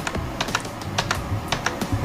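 Computer keyboard keys clicking several times at an irregular pace, as the newly re-detected USB keyboard is tried out.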